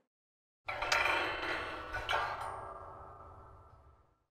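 Chime-like ringing logo sting. It starts suddenly about two-thirds of a second in, is struck again about a second later, and its tones fade away slowly toward the end.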